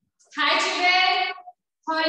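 A woman singing two long, held phrases of about a second each.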